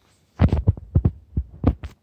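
A quick, irregular run of about seven loud, dull thumps and knocks over a second and a half, starting just under half a second in and stopping abruptly: handling noise from the phone being moved and set down.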